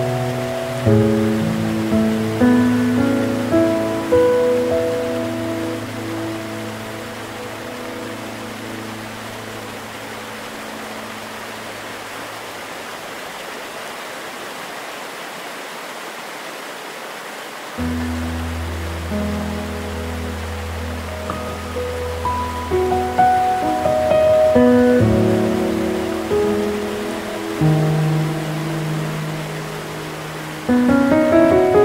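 Slow, gentle relaxation piano music over the steady rush of waterfall water. The piano thins to held, fading notes in the middle and comes back with a low bass chord about halfway through, followed by more melody notes.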